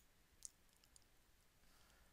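Near silence: room tone, with one faint, short click about half a second in.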